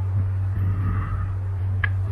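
A steady low hum, with one brief click near the end.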